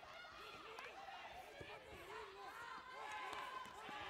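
Many voices shouting and calling out over one another, with a few sharp slaps of strikes landing in a full-contact karate bout.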